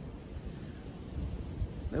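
Wind buffeting the microphone: an uneven low rumble that swells and fades.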